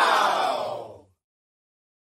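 A single drawn-out vocal cry, falling in pitch and fading out about a second in.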